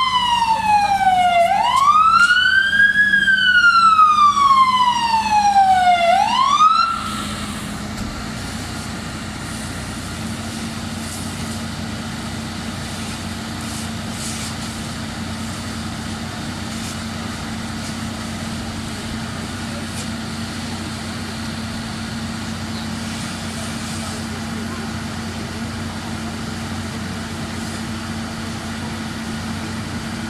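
Fire engine siren wailing in a slow fall and rise about every three seconds, then cut off about seven seconds in. After that a fire engine's engine runs at a steady idle with a low hum.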